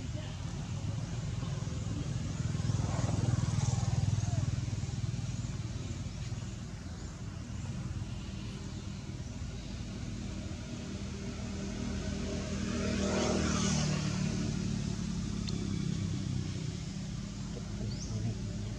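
Low engine rumble of passing motor vehicles, swelling twice: about four seconds in and again about thirteen seconds in.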